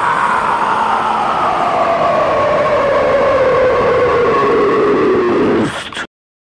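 A loud, noisy drone closing a death metal album track, its tone sliding slowly and steadily down in pitch, then cutting off abruptly at the very end.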